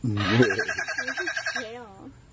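An animal's rapid call of evenly spaced pulses, likened to a machine gun, runs on steadily, with people's voices and a laugh over it.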